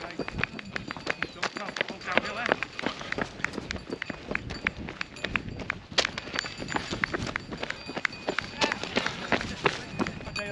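Runners' footsteps: many quick strikes of trail shoes on a gravel path, with indistinct voices in the background.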